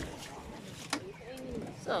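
A dove cooing: a few low, soft curved notes, with one sharp click about a second in.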